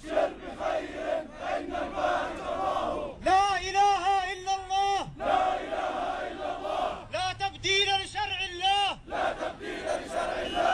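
Protest crowd of men chanting in call and response: a single leading voice, through a microphone and loudspeaker, chants long held lines about three seconds in and again about seven seconds in, and the crowd answers in unison between them.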